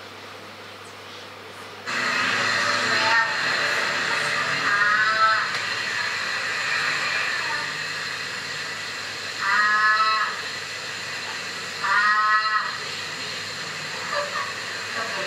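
Soundtrack of a recorded video playing over loudspeakers, starting suddenly about two seconds in. It carries a steady hiss of background noise, with a few short voices breaking through it, about three times, without clear words.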